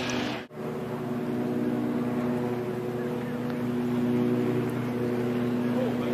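A steady engine drone with an even pitched hum that holds the same note throughout, over a background hiss. The sound drops out briefly about half a second in.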